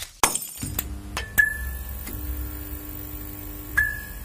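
Sound-effect sting for a neon logo: sharp glassy clicks and clinks over a steady electric hum and buzzing tones, with two brief high tones, fading away at the end.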